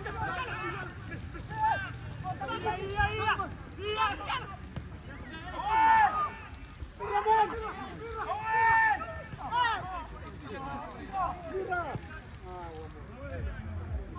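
People's voices shouting and calling out across a football pitch during play, in short repeated calls over a low steady rumble.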